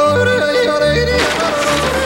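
A singer yodeling over instrumental accompaniment, with long held notes that jump in pitch.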